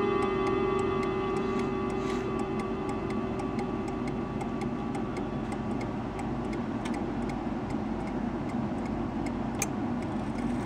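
Triple-chime mantel clock: the last chime-rod note rings out and fades over the first couple of seconds, then the movement ticks steadily.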